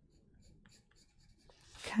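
Yellow coloured pencil skimming lightly over a paper postcard: a faint scratching of short strokes as a smooth, light underlay of colour is laid down.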